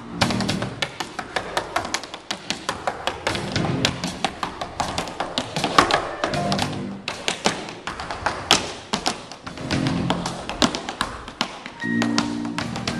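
Tap shoes striking a wooden stage in rapid, rhythmic runs of sharp taps, over sparse accompaniment from a jazz band whose low bass notes come in short phrases every few seconds.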